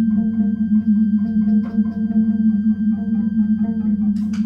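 Experimental improvised music: a loud, steady low drone held throughout, with a short pulsing figure repeating quickly above it, from effects-processed guitar and electronics.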